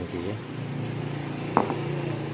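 A steady low machine hum, like a motor or engine running in the background, with a single sharp click about one and a half seconds in.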